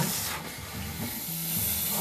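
A steady hiss, with faint low tones underneath.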